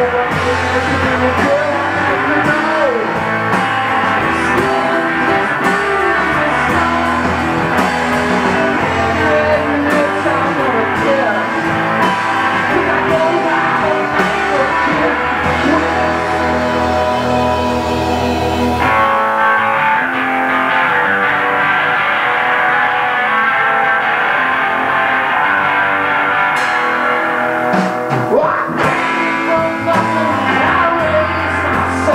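Live rock band playing loud, with electric guitars, bass and drums under a shouted lead vocal. The deepest bass drops away about two-thirds of the way in.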